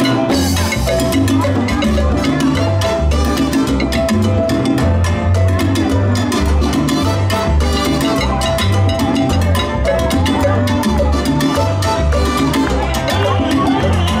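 Live salsa band playing a steady, unbroken groove: congas and timbales keep up a driving rhythm over a pulsing bass line, with trumpet in the band.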